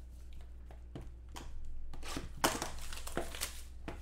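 Hands handling cardboard trading-card boxes: soft rustling and scraping, busier from about halfway through, with one sharp click a little after.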